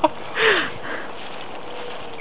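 A short breathy nasal burst of laughter about half a second in, just after a sharp click at the very start.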